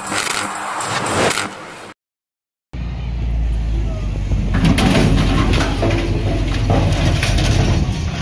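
Hyundai wheel loader's diesel engine running close by with a steady low rumble, while its bucket pushes over a metal mesh fence with a few clanks. The sound cuts out for about a second near two seconds in before the engine is heard.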